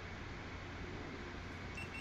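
Quiet steady room noise, with a faint short high electronic beep near the end from a GoPro Hero 8 as recording is stopped.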